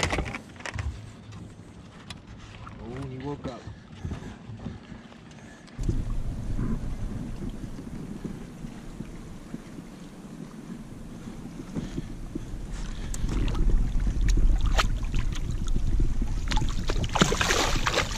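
Low wind rumble on the microphone from about six seconds in, with scattered knocks from the boat. Near the end, water splashes as a small carp thrashes at the surface and is scooped into a landing net.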